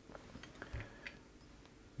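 Faint light clicks and handling noise of fingers turning the plastic stop-motion clutch knob on an Elna Star Series Supermatic's hand wheel, loosening it to disengage the drive, with one soft low thump a little under a second in.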